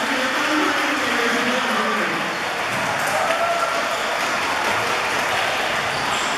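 Audience applauding steadily in a large hall, with voices over the clapping in the first two seconds.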